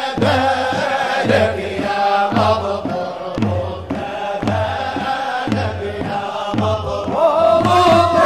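A group of voices singing a Sufi samaa and madih praise chant, the melody sustained and ornamented over a steady low beat about once a second.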